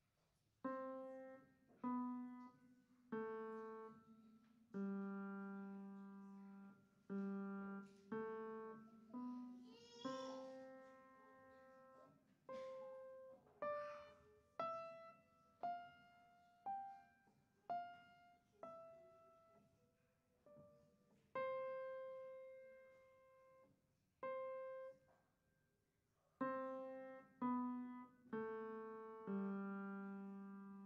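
Piano played one note at a time by a beginner: a slow, simple melody in which each note rings and fades, with some notes held for three beats.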